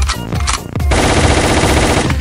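Machine-gun sound effect in a DJ jingle: a rapid burst of fire starting about a second in and lasting about a second, over dance music with heavy bass.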